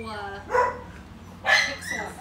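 A dog barking twice, about half a second in and again a second later.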